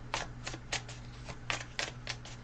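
Tarot and oracle cards being handled and shuffled: a quick, irregular run of crisp card snaps and flicks, about three or four a second, over a faint steady low hum.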